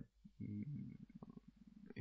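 A man's faint, low creaky-voiced hesitation sound, a rattling vocal fry, held for over a second.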